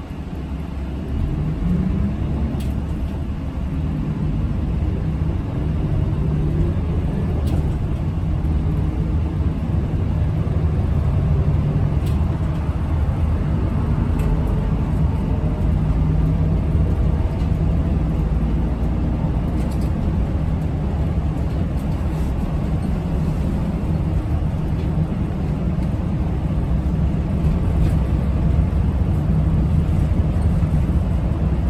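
City bus engine heard from inside the cabin, pulling away with its pitch rising over the first couple of seconds and growing louder as the bus gathers speed. It then runs steadily with a low hum and road noise.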